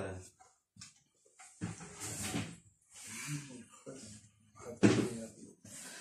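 Low, indistinct voices in a small room: several short stretches of murmuring, with a louder outburst of voice about five seconds in.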